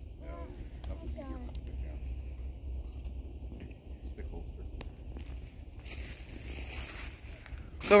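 Faint, distant children's voices in the first second or so over a steady low rumble of wind on the microphone, with a single sharp click about five seconds in and a rustling hiss, like dry leaves being disturbed, over the last two seconds.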